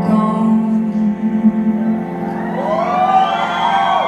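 Slow song with singing over held chords; in the second half the voice line swells and arches up and down in pitch.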